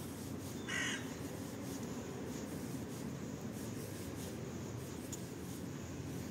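A single short crow caw about a second in, over steady low background noise.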